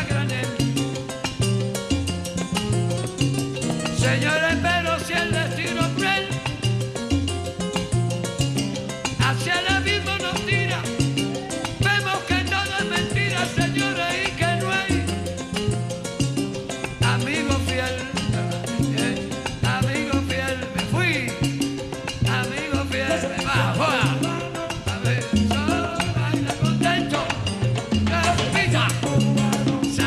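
Son montuno salsa band music, with a repeating bass line under steady percussion and melodic lines above.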